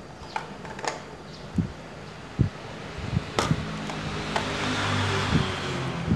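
A few light clicks and knocks from handling an analog multimeter on the bench. In the second half a steady low machine hum with a hiss swells up, loudest near the end.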